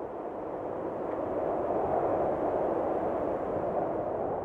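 Logo sound effect: a long rushing whoosh that swells up, peaks about halfway through and holds steady.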